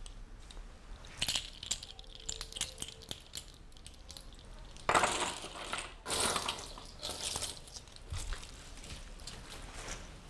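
Seashells on a handmade shell-craft hanging clinking and rattling against each other as it is handled, in irregular bursts of light clicks, loudest about five seconds in and again around six to seven seconds.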